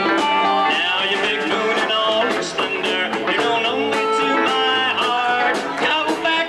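Live country band playing: electric guitar over a steady drum beat.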